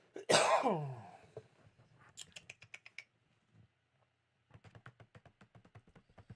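A man clears his throat with a short cough that falls in pitch, the loudest sound, just after the start. Then come two runs of rapid computer keyboard clicks, about eight a second, around two seconds in and again from about four and a half seconds to the end.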